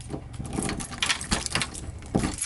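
A ring of keys jingling while a key is slid into a doorknob lock and the knob is turned, giving a run of small sharp metallic clicks and rattles.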